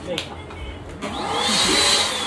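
Electric balloon pump switched on about a second in, its motor running with a whine and a rush of air as a balloon inflates on the nozzle.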